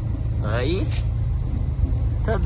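Truck engine running at low speed, heard from inside the cab as a steady low drone.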